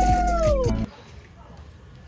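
A conch shell (shankha) blown in one long steady note that drops in pitch and stops just under a second in, over a low rumble; then only faint background.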